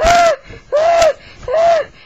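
A high-pitched voice crying out in short "ah" yells, three in a row about two a second, each rising and falling in pitch.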